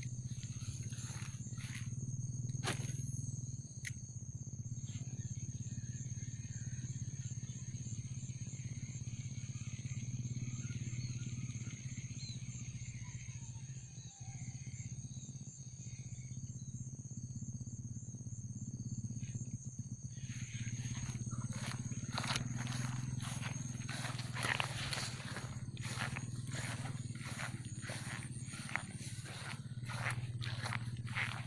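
Steady low drone with a high, pulsing insect trill over it. About twenty seconds in, irregular rustling and snapping of grass and brush begins as someone pushes through the vegetation.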